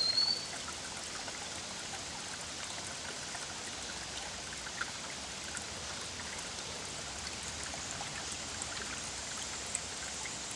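Shallow rocky stream running over stones: a steady wash of water with small scattered trickles and drips. A brief high chirp right at the start.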